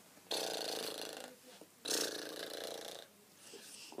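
A girl doing an animal impression with her voice: two long, harsh, breathy noises, each about a second long, one after the other.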